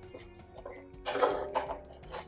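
Small light clicks and taps from a metal sound post setter working inside a violin, over soft background music, with a brief louder rush of noise about a second in.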